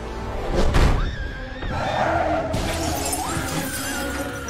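Film soundtrack: a loud crash about three-quarters of a second in, followed by a woman's high screams over dramatic music.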